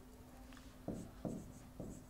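Stylus writing on an interactive whiteboard's screen: after a quiet first half, three short tapping strokes come about a second in, under a faint steady hum.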